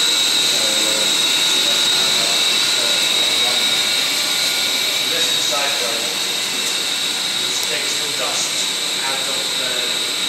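Steady running noise of a biomass district-heating boiler plant room, with its pumps and boiler in operation and a constant high-pitched whine through it.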